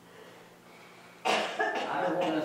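A man coughs: a sudden loud burst about a second and a quarter in, after a quiet stretch of room tone, with a rough tail following it.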